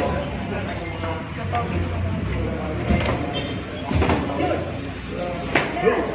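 Voices calling out from ringside during a boxing exchange, with a few sharp thuds of gloved punches landing, around three and four seconds in and again near the end.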